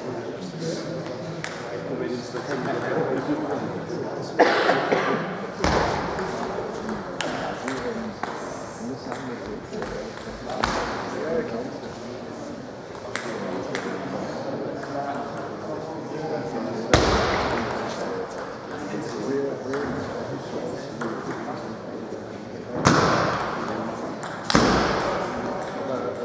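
Table tennis ball clicks and bounces ringing in the echo of a large sports hall, with a handful of sharp knocks spread through, over a murmur of voices.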